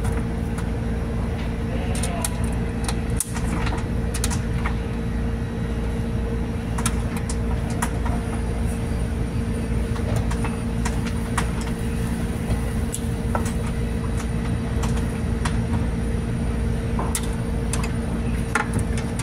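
Steady low machinery hum with a few constant tones, overlaid with scattered clicks and taps of hand tools on the ice machine's stainless-steel housing; a faint high whine joins about eight seconds in.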